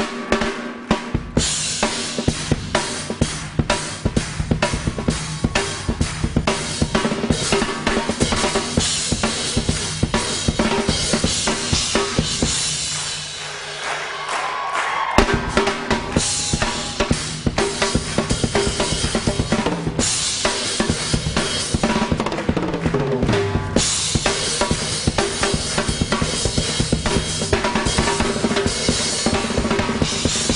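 Live drum kit solo: bass drum, snare and toms struck in a fast, busy pattern with cymbals, the full kit coming in about a second in. The drummer holds one stick in a doubled-over tennis wristband and grips the other with his thumb.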